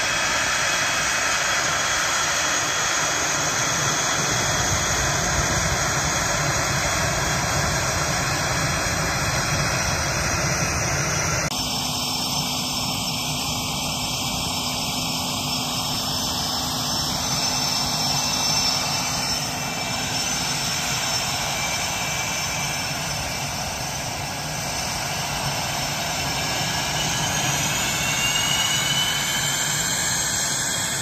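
Twin General Electric F404 turbofan engines of an F/A-18 Hornet running as the jet taxis, a steady jet whine with a loud rushing roar. The sound changes abruptly about eleven seconds in, and near the end the whine rises in pitch.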